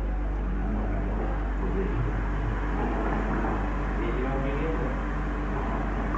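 A steady low rumble, as of a running pump or motor, under water sloshing and lapping in a small pool, with faint voices about the middle.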